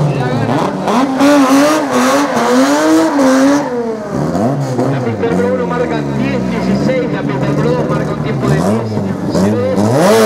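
Drag-racing car engines at full throttle, their pitch climbing and dropping again and again as they shift gears, more than one engine heard at once.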